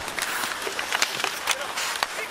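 Ice hockey arena crowd noise, with several sharp clacks of sticks and puck as players battle in front of the net.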